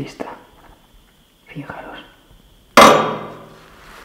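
A steel dental instrument is handled and then knocks once against metal on an instrument tray, a sharp clang about three-quarters of the way through that rings for about a second.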